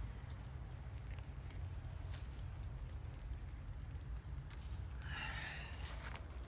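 Faint rustling of leaves and stems with a few light ticks as a hand reaches into garden plants to pick up a stink bug, over a low steady rumble.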